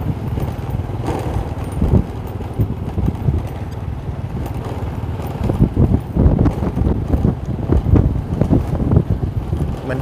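Wind buffeting the microphone over low road and vehicle rumble while travelling along a road, gustier and more uneven in the second half.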